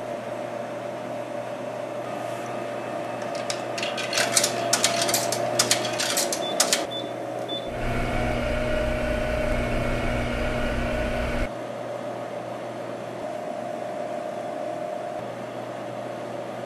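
Vending machine humming steadily. Partway through come a quick series of sharp clicks and a short electronic beep, then its vend motor runs with a low hum for about four seconds and cuts off abruptly.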